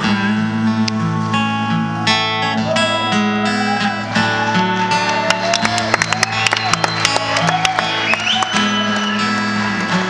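Solo amplified acoustic guitar playing an instrumental passage over sustained low bass notes, with a picked melody line, as a bridge from one song of the medley into the next.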